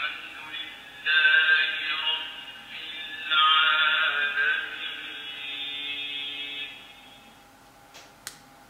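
Quran recitation, a chanting voice with long held melodic notes, played through a Quran reading pen's small built-in speaker, thin-sounding with no highs. It comes in a few phrases and stops about seven seconds in.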